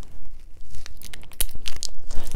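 Cellophane-type plastic wrapping being torn open and crinkled by hand, a run of irregular sharp crackles that grows busier in the second second.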